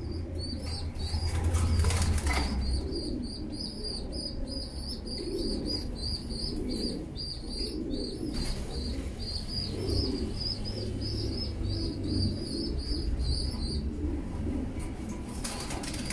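Pigeons in a loft: low cooing throughout, a steady run of short, high, thin chirps at about three a second until near the end, and a flurry of wing flapping about two seconds in.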